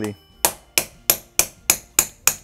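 Hammer gently tapping a steel driver to knock the bush out of a rocker arm held in a fixture: a steady run of sharp metallic taps, about three a second, starting about half a second in.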